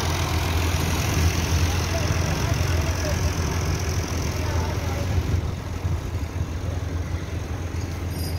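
Diesel farm tractor engine idling steadily, a continuous low hum.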